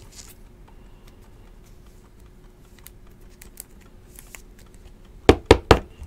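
A trading card being slid into a clear plastic sleeve and rigid toploader: faint plastic rustles and small ticks, then three sharp knocks in quick succession near the end.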